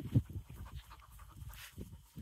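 A boxer dog panting quickly, in a fast, uneven rhythm.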